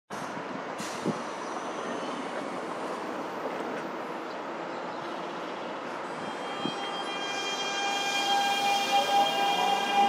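Nankai 1000 series electric train starting to depart. After an even background rush, its traction-motor inverter whine sets in about seven seconds in as several steady tones. The whine grows louder and starts to rise in pitch near the end as the train pulls away.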